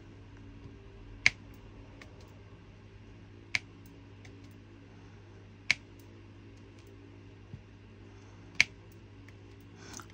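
Diamond-painting drill pen clicking as it picks up resin drills and presses them onto the canvas: four sharp clicks, spaced about two to three seconds apart. A steady hum from an electric fan runs underneath.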